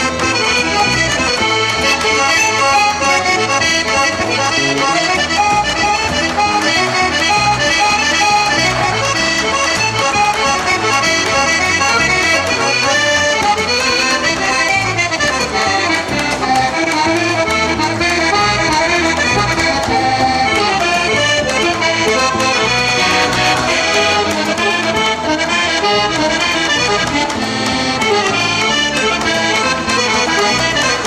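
A live folk band playing a lively tune: a piano accordion carrying the melody over an electric bass guitar and a large bass drum keeping the beat. The music runs on steadily and loudly throughout.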